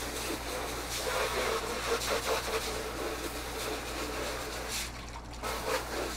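Water from an overhead pre-rinse sprayer running onto a plastic container and into a stainless steel sink, a steady hiss that eases off near the end.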